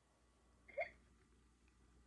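An animatronic plush toy monkey gives one short electronic hiccup about three quarters of a second in. The hiccup is its programmed response after being fed bananas.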